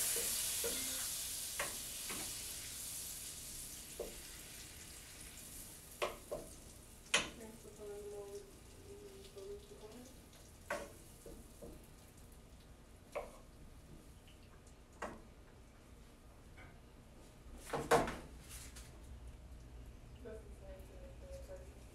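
Butter sizzling as it melts in a skillet for a roux, loudest at the start and fading as the heat is turned down so it doesn't burn. Now and then a wooden spoon taps and scrapes against the pan, with a louder knock near the end.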